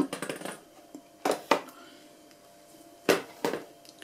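Sharp knocks and clicks of hard plastic and metal parts being handled, as an antenna array on its metal boom is brought over and set against its mount: two quick knocks about a second in and two more about three seconds in.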